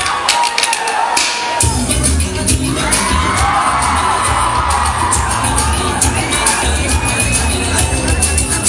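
Dance-mix music over a hall's sound system with an audience cheering and shouting over it; a heavy bass beat comes in about one and a half seconds in.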